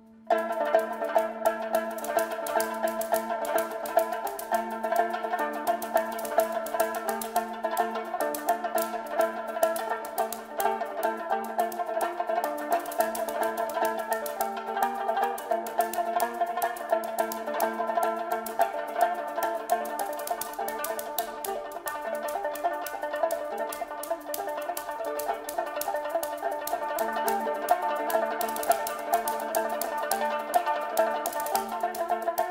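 Kamancheh (Persian spike fiddle) and percussion playing together over a steady low drone, with fast, even stick strokes running throughout. The music starts suddenly just after a brief pause at the very start.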